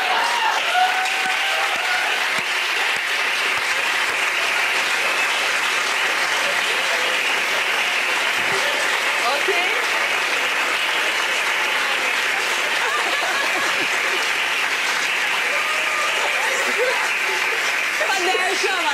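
Steady applause from a studio audience, with a few voices heard over it in the first second or two.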